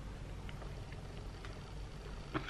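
Faint low room hum with a few small clicks from an enteral syringe and the plastic port of a nasogastric feeding tube being handled as the syringe is unhooked.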